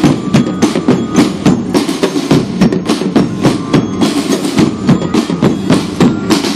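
A marching drum band's percussion section playing a fast, steady beat on snare drums and bass drums.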